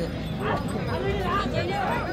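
Several men shouting and calling over one another, urging on a pair of bulls as they drag a stone block.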